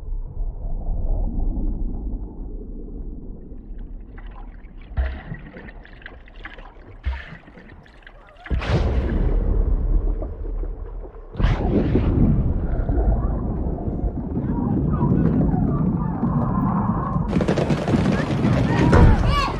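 Muffled underwater film sound design, with dull, low water and beach noise. Two sudden loud water surges come about eight and a half and eleven and a half seconds in, followed by heavy low churning. Just before the end the sound breaks back above the surface into the full, bright noise of a beach crowd.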